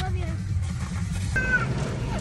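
Steady low engine rumble in a car cabin, and about one and a half seconds in a brief high-pitched whine from a young child in the back seat.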